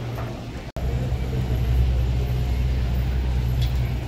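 City street traffic: minibuses and cars running past with a steady low rumble. The sound cuts out for a split second under a second in.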